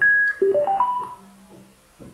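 Digital mirror alarm clock's speaker giving a short high beep, then a quick rising run of four electronic notes as a button on top of it is pressed.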